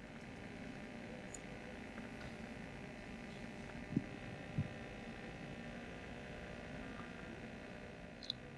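Steady low hum and hiss of a faulty lecture-hall microphone and PA, with two short, soft low thumps about halfway through.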